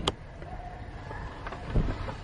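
Low steady rumble inside a car, with a sharp click just after the start and a dull thump near the end.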